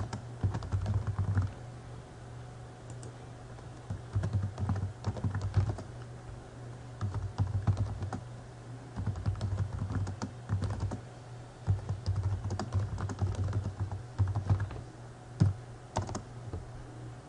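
Computer keyboard being typed on in quick bursts of keystrokes, with short pauses between words and phrases and one longer pause of about two seconds after the first burst.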